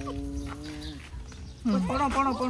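A rooster crowing: the crow ends in one long held note that sinks a little and fades out about a second in. Near the end a short wavering call begins.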